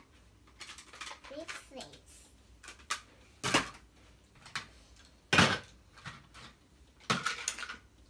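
Plastic toy plates and play-kitchen dishes clattering as they are handled and set down: a few sharp knocks with smaller clicks between, the loudest about five seconds in.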